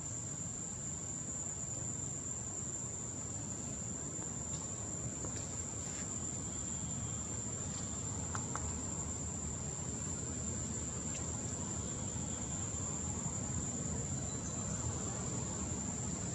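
Forest insects keeping up one steady, unbroken high-pitched trill, over a low even background hiss.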